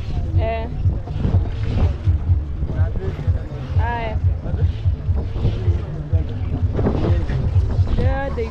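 Wind buffeting the microphone on open, choppy lake water, making a steady low fluttering rumble, with a few brief snatches of voices.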